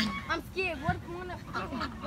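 Ducks and domestic geese calling on a pond: a quick run of short quacking and honking calls, several in under two seconds, as the birds crowd and squabble over thrown bread.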